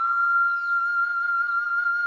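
Background music: a flute holds one long high note, steady with a slight waver.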